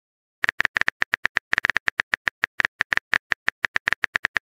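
Simulated phone-keyboard typing clicks from a texting-story animation app: a rapid, uneven run of short clicks, several a second, starting about half a second in, as a message is typed out.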